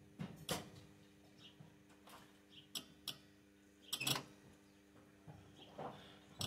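Faint scattered clicks and creaks over a faint steady hum; the truck's engine is not running.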